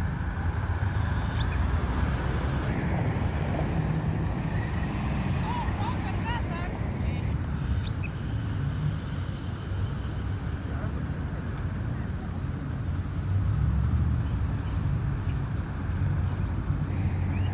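Parking-lot traffic: cars and a pickup truck driving past with a steady low engine and tyre rumble. It swells at the start and again about two-thirds of the way through.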